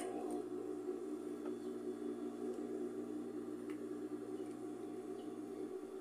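Steady low hum of a sewing machine's electric motor running while the needle stays still, with no stitching.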